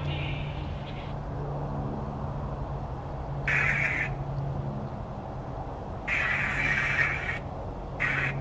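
Necrophonic ghost-box device playing through a small speaker: four short bursts of scratchy, chopped noise, each half a second to a second long, at uneven gaps, over a steady low hum.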